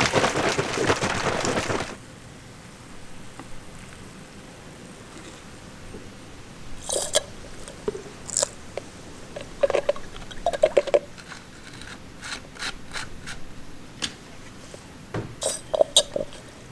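A loud rush of noise for about the first two seconds, then scattered small plastic clicks and taps as a plastic syringe measures liquid nutrient and squirts it into the hydroponic container through the hole in its plastic lid.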